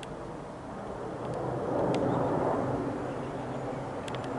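Airbus A320 airliner passing overhead on its descent: a broad, rushing jet noise that swells to its loudest about two seconds in, then eases slightly.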